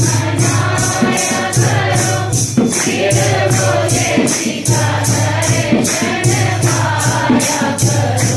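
Devotional group singing (bhajan) over jingling hand percussion that keeps a steady beat of about three strokes a second.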